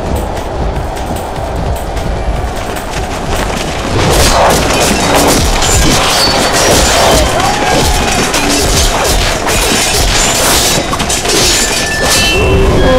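Battle soundtrack under music: a low, dense rumble of an army charging, then from about four seconds in a louder din of crashes, booms and clashing weapons with voices crying out.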